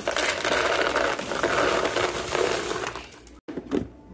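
Teddy Grahams crackers pouring out of their bag into a clear plastic storage container: a dense rattling clatter of small crackers hitting plastic and each other for about three seconds. A couple of light knocks follow near the end.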